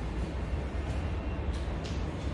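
Steady low room rumble, with a few short squeaky strokes of a marker writing on a whiteboard near the end.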